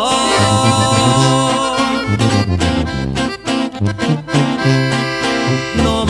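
Instrumental break in a norteño corrido, with no singing: accordion playing over a pulsing bass line. It opens with a chord held for about two seconds, then moves into quicker notes.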